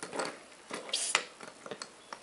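Wooden toy animal pieces being handled in a toy train's cage cars: a few light, irregular clicks and knocks of the pieces against the cages, the sharpest about a second in.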